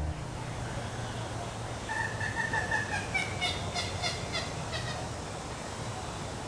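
Large birds calling over a steady outdoor hiss: a run of short honking calls about two seconds in, followed by a quick series of clipped calls that fades out near the end.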